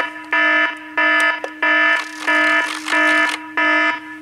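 Electronic alarm-style beeping from an iHome iH6 clock radio's speakers: a loud, buzzy, many-overtoned tone pulsing on and off about one and a half times a second. The radio's treble and bass settings are being stepped through while it sounds.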